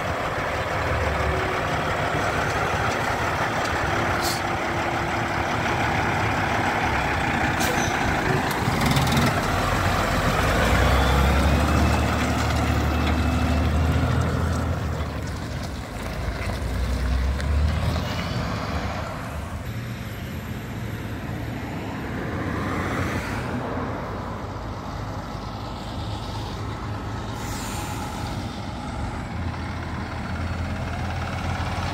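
Diesel engine of a semi truck pulling a bottom-dump trailer, accelerating away, loudest about ten to fourteen seconds in and then fading into the distance. A few short hisses of air in the first ten seconds, typical of truck air brakes, and a quieter truck engine approaching later.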